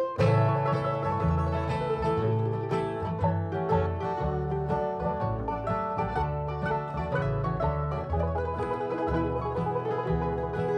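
Bluegrass band of mandolin, banjo, acoustic guitar and upright bass playing the instrumental start of a new number, with a steady bass pulse under the picked strings.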